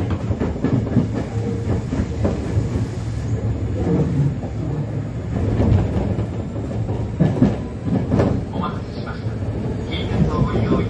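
Kyoto Municipal Subway 10 series electric train with armature chopper control, running with a steady rumble and scattered clacks of the wheels over rail joints.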